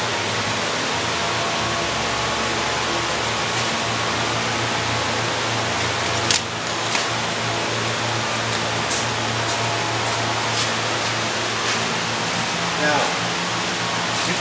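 Greenhouse ventilation fans running with a steady rushing noise and a low hum. A single sharp knock comes about six seconds in, and faint voices are heard near the end.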